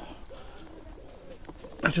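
Pigeon cooing in the background, a few soft low notes in a row.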